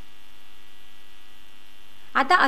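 Steady electrical mains hum, a flat buzzing drone of several even tones that holds unchanged throughout.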